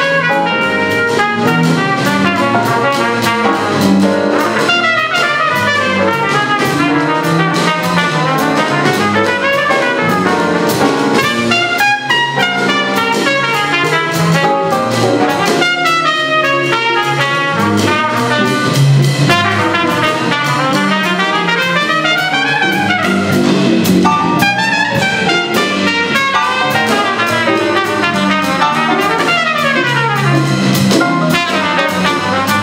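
Live jazz combo playing: trumpet leading over piano, hollow-body electric guitar, electric bass and drum kit.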